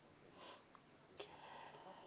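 Near silence in a small room, with a person's soft breath sounds and one light click just over a second in.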